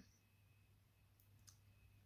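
Near silence: room tone, with a faint click about one and a half seconds in.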